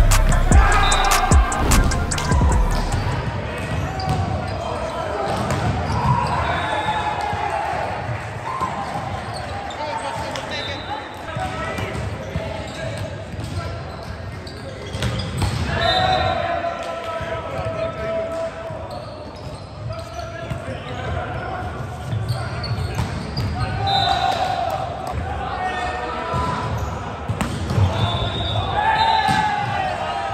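Indoor volleyball play in a gym hall: the ball struck and bouncing, with players' shouts and calls, all echoing. Music ends about two seconds in.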